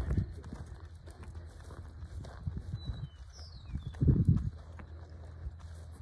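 Thoroughbred racehorse walking on a dirt training track under a rider, its hooves giving soft, regular footfalls over a steady low outdoor hum, with a louder low sound about four seconds in.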